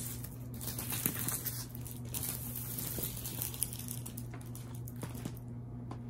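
A large diamond-painting canvas with its plastic cover rustling and crinkling as it is unrolled and smoothed flat by hand, with a few light taps, over a steady low hum.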